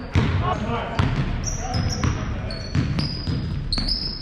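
A basketball dribbled on a hardwood gym floor: repeated bouncing thuds, with sneakers squeaking on the court and players' voices echoing in the gym.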